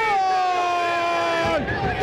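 A male football commentator's drawn-out goal cry, one long held "gol" on a single note that sinks slightly and breaks off after about a second and a half, over a faint crowd.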